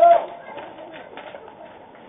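A player's short, loud shout right at the start as the batter strikes out swinging, then quieter calls from the field.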